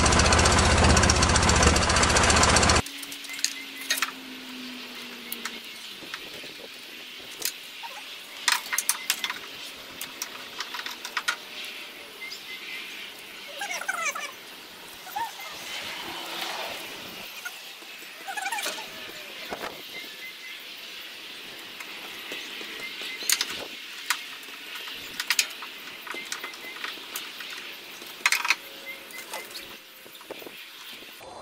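A 1973 VW Super Beetle's 1745cc air-cooled flat-four, on dual Dellorto FRD 34 carburettors with 48 idle jets, idles steadily, then shuts off abruptly about three seconds in. After that there are scattered light clicks and knocks of hand work at the carburettor as the idle jets are swapped.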